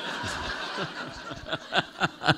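Audience laughing, with one man's laugh coming in quick short pulses in the second half.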